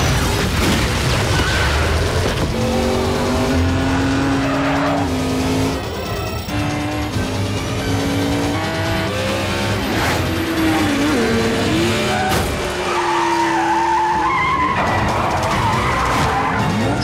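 Car engines revving hard and climbing through the gears, with tyres squealing, mixed with a film music score.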